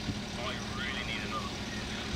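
Low, steady vehicle rumble, with a faint voice in the middle.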